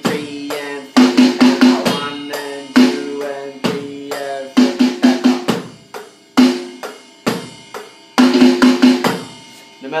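Electronic drum kit playing a slow beat, broken roughly every three and a half seconds by a short fill of quick sixteenth-note strokes in a single-stroke roll.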